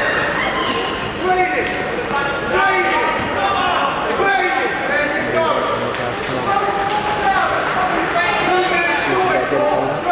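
Several people talking and calling out at once, overlapping voices that carry on without a break through the whole stretch.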